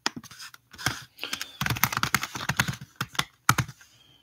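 Typing on a computer keyboard: a run of key clicks, sparse at first, quick and dense through the middle, then a few last strokes that stop just before the end.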